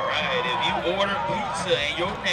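Crowd of student spectators in the stands, many voices shouting and talking over one another.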